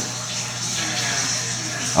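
Steady low hum with a faint even hiss, with no distinct sound events.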